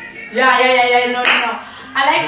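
A woman's voice singing out loudly over background music, followed just past the middle by a short clap-like burst.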